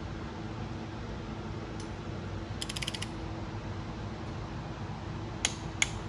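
Click-type torque wrench on cylinder-head studs: a quick run of ratchet clicks about halfway through, then two sharp clicks near the end as the wrench breaks over at its 28 ft-lb setting. A steady low hum runs underneath.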